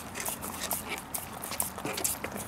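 Siberian huskies licking and chewing a raw egg with its shell, close to the microphone: irregular wet smacks and small clicks, several a second.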